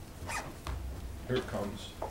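Two short rasping rustles, like a zipper or paper being handled, then a few quiet words spoken away from the microphone.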